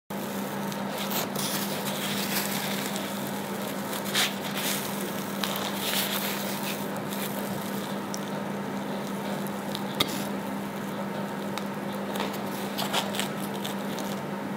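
Baked semolina focaccine being torn apart by hand, the crust crackling with a continuous rustle and scattered sharp crackles, over a steady low hum.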